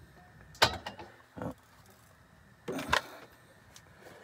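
A few sharp clicks and knocks with brief rustling, as of small objects being handled: one about half a second in, a short one near a second and a half, and another near three seconds.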